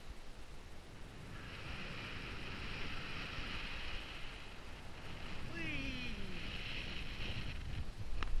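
Quiet outdoor hiss that holds steady from about a second and a half in, with one brief falling call a little past halfway.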